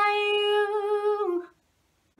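A young woman's voice singing unaccompanied, holding one long steady note that stops about one and a half seconds in.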